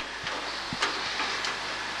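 Steady low background hiss with a couple of faint clicks about a quarter and three-quarters of a second in.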